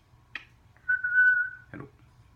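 African grey parrot giving one steady whistle, held level for just under a second, with a short click before it and a brief raspy burst right after.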